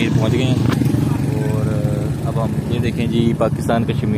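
Motorcycle engine running steadily, with voices talking over it.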